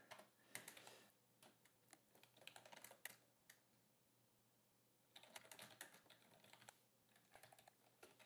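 Faint typing on a computer keyboard: quick keystrokes in short runs, with a pause of a second or so in the middle.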